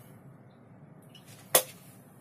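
A single short, sharp knock about one and a half seconds in, from the cooking-oil bottle being put down after oil is poured over the beef; otherwise only faint room hiss.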